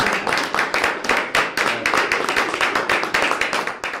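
A group of people applauding: many hands clapping in a dense, irregular patter that stops abruptly at the end.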